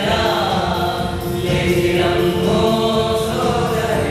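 Male choir singing a Christian song together through microphones, holding long notes that shift in pitch every second or so.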